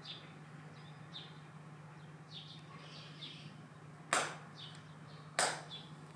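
Two sharp hand claps, about a second and a quarter apart, with a short echo after each: the kashiwade claps of Shinto worship, offered before a shrine altar.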